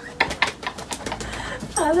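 A few faint, short clicks in the first second, then a woman's voice coming in near the end with a drawn-out, gliding "I…".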